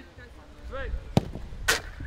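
Two sharp thuds of a football being struck, about half a second apart, the second the louder, with faint voices in the background.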